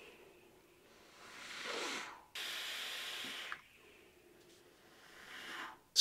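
Breathy hissing of a person vaping on a box mod fitted with a 0.12-ohm coil build, air and vapour drawn in and blown out. There is a swelling breath about a second in, a steady hiss lasting just over a second from about two seconds in, and a short breath near the end.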